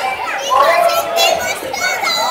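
Overlapping voices of children and adults in a street crowd, chattering and calling out close by.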